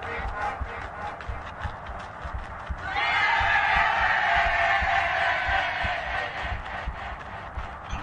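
Many overlapping, distorted copies of a children's cartoon soundtrack playing at once, with rapid low knocks throughout. About three seconds in, a louder, long, many-toned sound comes in.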